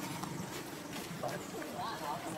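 Faint background chatter of people talking at a distance, over steady outdoor ambience.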